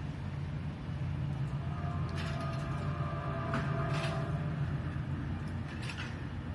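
Steady low rumble of city street traffic, with a faint squealing tone and a few sharp clicks and rattles between about two and four and a half seconds in.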